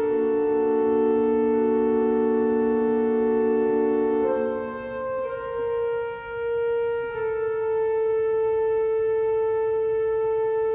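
The 1897 W. W. Kimball pipe organ, rebuilt by Buzard in 2007, playing slow sustained chords. One note is held throughout while the chords beneath and around it change twice. The sound softens briefly around the middle, then swells back.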